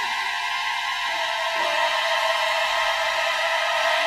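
Symphony orchestra holding a sustained, dense high chord, with a brief low note about a second and a half in.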